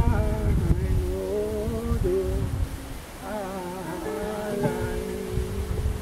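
Man singing a slow melody with long, wavering held notes over his own acoustic guitar.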